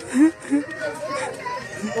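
A young child's voice making a few short wordless sounds, with faint children's voices behind.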